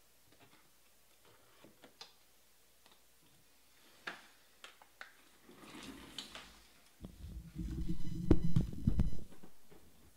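Scattered light clicks and taps, then from about seven seconds in a louder stretch of low bumping and rustling with sharp clicks, lasting about two and a half seconds: objects being handled on a desk.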